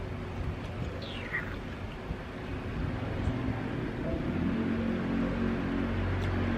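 Outdoor background with steady wind-like noise. About a second in there is a single falling whistle-like call, like a bird's. From about four seconds in, a low steady engine-like hum sets in.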